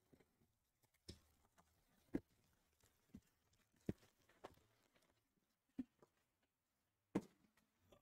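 Faint, scattered knocks and taps, about seven in eight seconds, of cardboard boxes being handled as a shipping case of trading-card hobby boxes is opened and unpacked.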